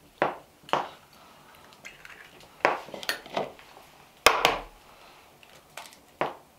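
Eggs being cracked by hand and the shells knocked and clinked against a ceramic bowl while the yolks are separated from the whites: a series of short, sharp clicks and knocks, the loudest a little past four seconds in.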